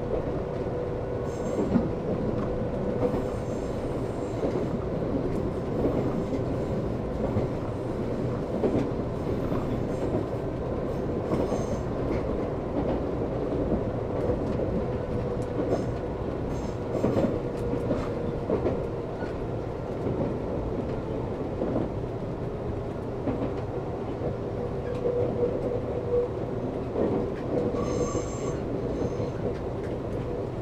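Nankai 30000 series electric train running on curving mountain track, heard from inside the driver's cab: a steady rumble of wheels on rail with a running hum, and short high wheel squeals several times on the curves. The train slows in the second half.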